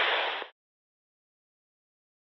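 Two-way radio static hiss at the end of a dispatch transmission, cutting off abruptly about half a second in, followed by silence.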